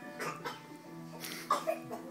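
Small group of two acoustic guitars and an electronic keyboard playing a song, with held notes. About one and a half seconds in, two short loud sounds close together stand out above the music.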